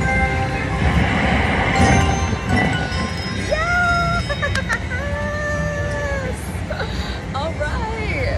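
Red Festival slot machine electronic chimes and jingle as the reels stop and a small win registers, over steady casino background noise. A woman gives two drawn-out exclamations in the middle, with a sharp click between them.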